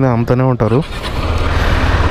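KTM 390 Adventure's single-cylinder engine running with a low pulsing rumble as the bike rides off, under a steady rush of wind on the microphone. A man's voice speaks briefly at the start.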